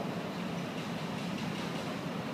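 Steady background noise of a large hall, with no distinct event.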